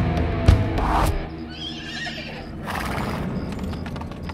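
Band music breaks off about a second in, leaving a horse whinnying. A short breathy burst and a run of light hoof clip-clops follow, as a sound effect laid into the song.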